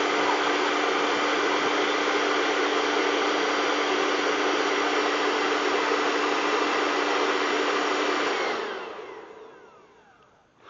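Hair dryer blowing steadily, a rushing airflow over a constant motor hum. It is switched off about eight and a half seconds in, and its whine falls away as the motor spins down.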